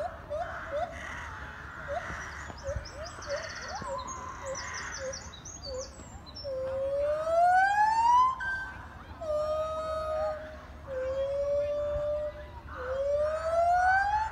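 Gibbons calling: a string of short rising hoots at first, then from about six seconds in long whoops, each sliding up in pitch, that come louder and longer, as a gibbon song builds.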